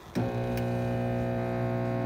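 Microwave oven running with a very loud, steady electrical hum: a low buzz with several steady tones stacked above it, starting a moment in. The oven runs and turns its turntable but does not heat the water, a fault in its heating circuit.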